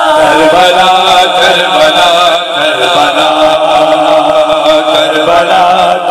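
A noha, a Shia mourning lament, chanted by voice in a continuous, wavering melodic line, amplified through microphones.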